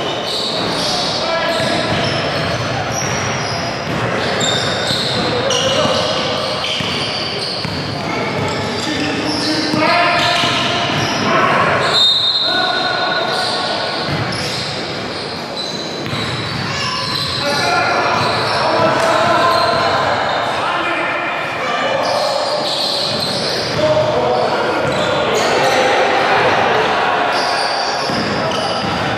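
Indoor basketball game: the ball bouncing on the hardwood court, many short high sneaker squeaks, and players' indistinct voices, all echoing in a large gym.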